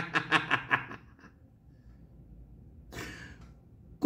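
A man laughing hard in quick, rapid pulses that trail off about a second in, then a short breath in near the end.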